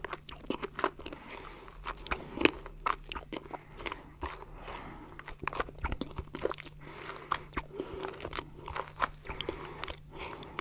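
Close-miked chewing of stracciatella pudding: soft, wet mouth sounds with small crunches from the chocolate flakes, heard as an irregular string of crackles and clicks.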